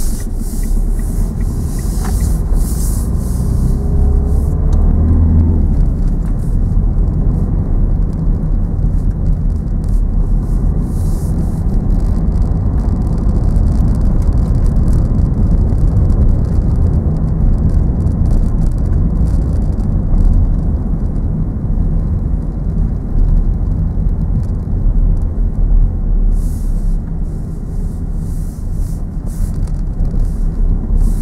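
Car cabin noise while driving: a steady low rumble of engine and tyres on a wet road. About four seconds in, the engine note rises as the car pulls away from the junction and accelerates.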